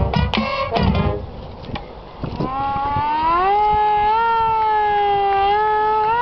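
Marching band's brass and drums end on final accented hits about a second in. A little after, a single long tone rises in pitch, then holds with a slight waver.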